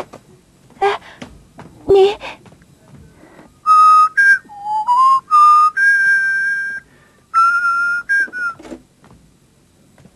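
A person whistling a short tune of several held notes that step up and down, starting about four seconds in and lasting about five seconds.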